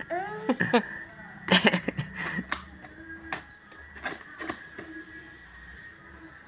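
A toddler's high voice in short sing-song calls that glide up and down, mostly in the first couple of seconds, with a few knocks from handling a cardboard box.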